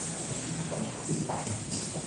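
Room noise of a crowded courtroom: irregular knocks and shuffling from people moving on wooden benches and floor, with faint voices in the background.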